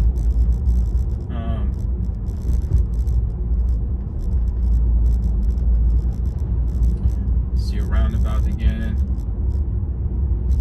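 Steady low road and tyre rumble inside the cabin of a Tesla Model 3 driving along a road; being electric, it has no engine note.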